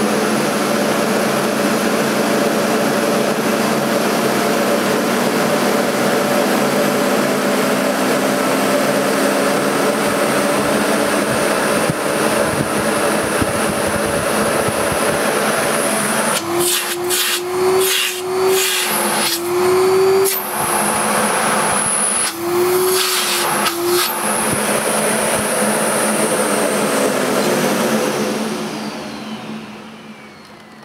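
Bosch Perfecta 83 bagged cylinder vacuum cleaner running, its motor pitch rising steadily as the power slider is turned up from 300 to 1400 W. From about halfway the hose end is blocked off by hand several times, the suction note wavering and cutting in and out with each blockage, a test that lights the bag-check indicator. Near the end the motor is switched off and runs down.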